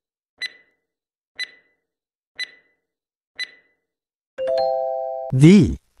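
Quiz countdown timer sound effect: a short, high ticking beep once a second, four times, then about four and a half seconds in a chime of several steady tones lasting about a second, signalling that time is up and the answer is revealed.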